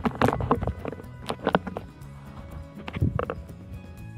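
Background music with sustained tones, over a run of irregular knocks and clicks in three short clusters.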